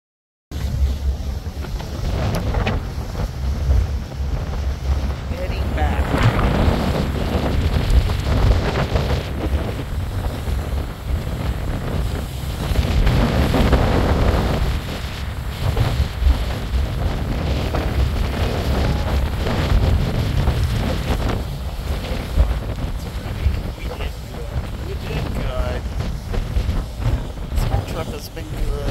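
Wind buffeting the microphone on a moving boat out on open water: a heavy, ragged low rumble with the wash of water beneath it. It starts abruptly about half a second in.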